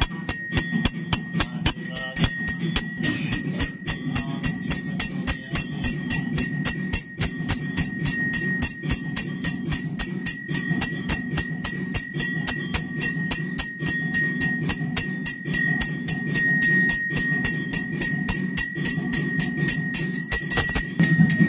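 A puja bell rung in fast, even strokes throughout the aarti lamp offering, over music with a low, steady drone.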